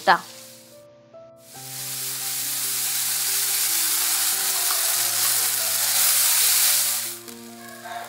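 Food sizzling in hot oil in a kadai as a coarse ground mixture is stirred in with a wooden spatula, over soft background music with held notes. The sizzle starts about a second and a half in and dies down near the end.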